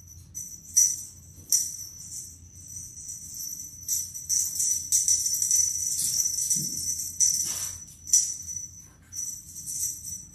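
Small jingle bell on a cat wand toy jingling irregularly as the toy is waved and shaken, in uneven bursts with a few louder jangles.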